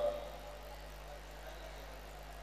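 A pause in speech with a steady low hum and faint background noise underneath.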